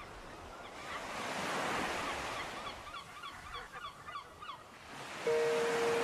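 A steady rushing noise, like wind on the microphone, with a quick run of short bird calls in the middle. Near the end a music track with held notes starts abruptly.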